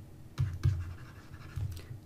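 Stylus writing on a tablet screen: a few soft taps and short scratching strokes as a word is handwritten.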